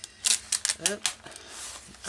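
Stiff, paint-laden pages of a mixed-media art journal being turned by hand: a quick run of sharp papery crackles and clicks in the first second, then a softer rustle.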